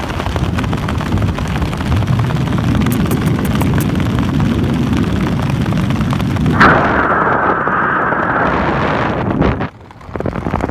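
Heavy wind buffeting on the microphone at the open door of a skydiving jump plane, with the aircraft's engine underneath. A little over halfway through the sound changes suddenly to a higher rushing of air, then drops out briefly just before the end.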